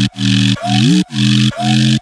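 Electronic house music in a drumless breakdown: a held synth bass note repeating in phrases about a second long, with a short upward slide in pitch, over a hiss of synth noise.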